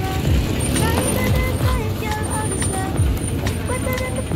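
People's voices over a steady rumble of road vehicle noise.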